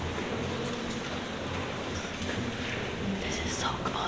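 Low, indistinct murmur of people's voices, with no clear words.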